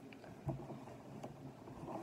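Faint movement and handling noise: a soft thump about half a second in and a few light clicks over a low steady room hum.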